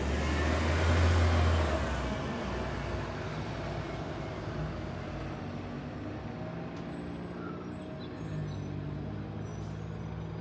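A motor vehicle passes close by on the road, its engine and tyre noise swelling to a peak about a second in and fading away over the next second. After that comes a steady low hum of idling engines and traffic, with a low engine drone starting up about eight seconds in.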